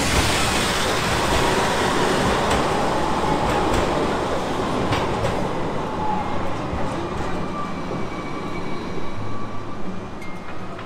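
A modern street tram passing close by, its wheels running on the rails with a steady rushing noise and a few sharp clicks, loudest in the first half. A faint high whine comes in over the second half.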